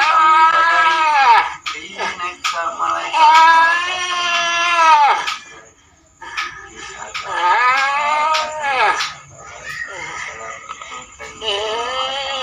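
A person wailing in long, drawn-out wordless cries, four in all, each sliding down in pitch as it ends.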